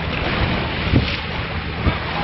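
Wind buffeting the microphone in gusts over the wash of choppy sea waves.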